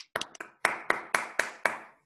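Hand clapping in applause: about ten sharp claps, irregular at first, then settling into an even beat of about four claps a second before stopping suddenly.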